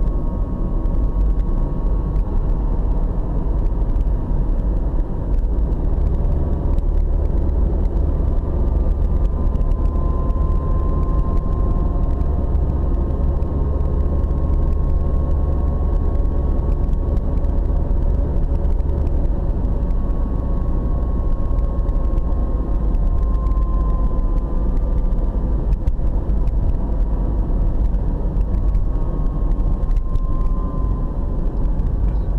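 Car interior driving noise heard from inside the cabin: a steady low rumble of tyres and engine on the road. Faint whining tones drift slowly up and down in pitch as the speed changes.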